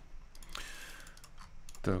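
A quick run of faint, light clicks at a computer, of the kind made by keys or a mouse while scrolling a page, mostly in the first second. A short spoken word comes right at the end.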